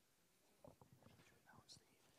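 Near silence with faint, distant murmured voices that begin a little over half a second in.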